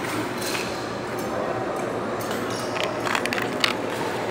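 A few light clicks and clinks of a plastic toy car handled against a glass tabletop, mostly in the second half, over a steady background hiss.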